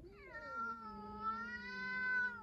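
A cat yowling: one long, drawn-out call that rises at its start, holds a fairly steady pitch and grows louder. It is the threatening yowl of a cat squaring up to another cat in a territorial standoff.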